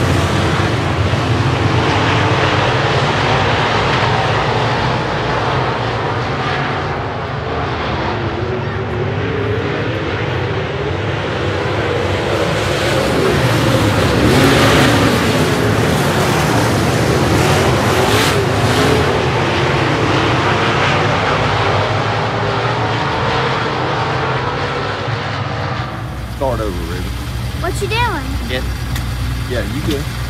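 A pack of dirt modified race cars running hard around a dirt oval, engines at high revs swelling and fading as the cars pass. About 26 seconds in, the sound cuts abruptly to a steady low engine hum with voices.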